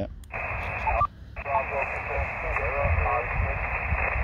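Elecraft KX2 transceiver's speaker playing single-sideband reception on the 20-metre band: narrow, tinny static with a weak, hard-to-make-out voice in it, a distant station coming back to a CQ call. The static drops out briefly about a second in.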